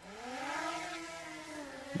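DJI Mini 2 quadcopter's propellers spinning up for takeoff: a whine that rises in pitch over the first second and then holds steady as the drone lifts off and hovers.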